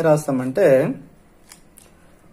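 A man's voice speaking for about the first second, then two faint light ticks of a marker pen against paper.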